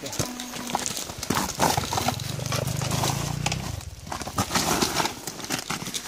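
Clattering of boots and tyres on loose, wet rock as a Beta enduro dirt bike is worked by hand up a rocky slope, with the bike's engine turning over in a low, evenly pulsing run for about two seconds in the middle, then stopping.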